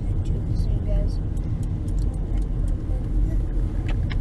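Inside a moving car: a steady low rumble of engine and tyres on the road as the car drives slowly.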